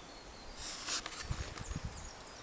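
Faint woodland background with camera handling noise: a brief rustling hiss about half a second in and several soft low bumps as the handheld camera is moved.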